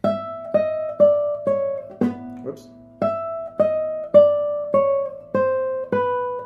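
Nylon-string classical guitar playing a slow, stepwise descending chromatic scale, about two notes a second. There is a slip about two seconds in, and a second later the run picks up again from a higher note and steps down once more.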